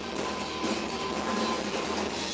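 Live electronic rock band playing a sparse passage of the song, heard through a phone's microphone as a dense noisy wash with a faint thin held tone and no clear beat.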